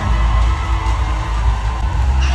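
Live music played loud through a hall's sound system, with a heavy, steady bass.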